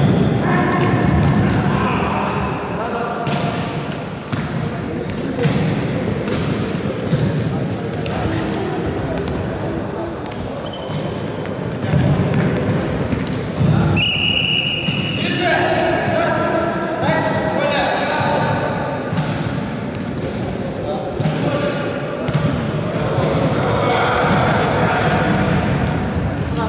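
Futsal game in an echoing sports hall: players' shouts and calls, with the ball knocking off feet and the wooden floor. About fourteen seconds in, a short high referee's whistle sounds as a player goes down.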